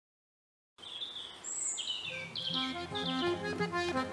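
Silence for a moment, then birds chirping and calling in short high phrases. About halfway in, instrumental music of held notes over a low steady drone fades in and takes over.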